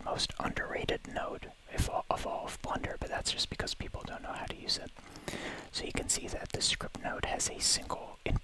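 Whispered speech: a man talking in a whisper, with sharp hissing consonants throughout.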